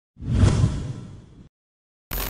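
Intro whoosh sound effect with a deep low rumble. It swells within the first half-second, fades, then stops abruptly about one and a half seconds in.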